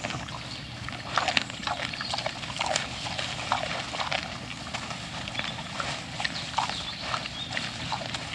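A herd of wild boar feeding and scuffling over food: a busy, irregular run of short animal sounds, loudest about a second in.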